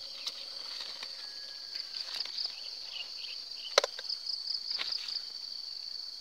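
Insects chirring steadily in a high band, with a few sharp clicks from hands working the graft as a durian scion is fitted into a slit in the rootstock stem; the loudest click comes a little before four seconds in.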